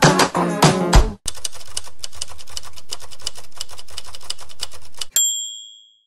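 A short musical jingle ends about a second in. Then rapid typewriter keystrokes clatter for about four seconds and finish with a single bell ding, like a typewriter's carriage-return bell, that rings out and fades.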